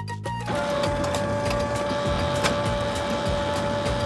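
A photocopier running with a steady whir and a held tone, starting about half a second in after a short music phrase ends.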